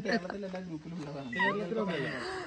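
People talking, with a brief high call about one and a half seconds in that rises and then drops in pitch.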